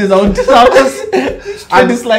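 Men's voices laughing and chuckling in between loud, excited exclamations.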